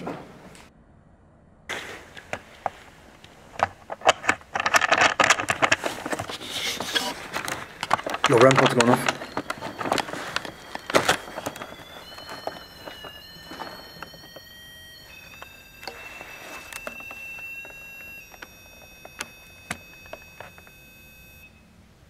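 Clicks and knocks with brief low voices, then from about ten seconds in a steady electronic tone that steps up and down between pitches for about ten seconds and cuts off near the end. The tone is the alarm of a ghost-hunting sensor with a small antenna (a REM-pod type device) set on the floor, going off.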